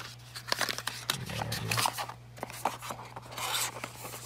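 Packaging being handled: a plastic insert tray and cardboard box give a scatter of small clicks and knocks, with a brief crinkling rustle near the end.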